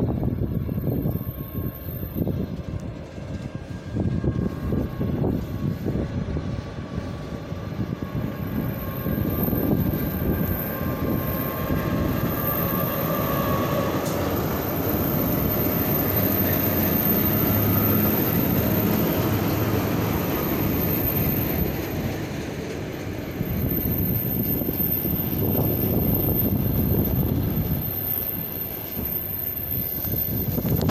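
A locomotive-hauled train passing close by: a continuous low rumble with a diesel engine drone that grows to its loudest around the middle of the pass, with a short whine partway through.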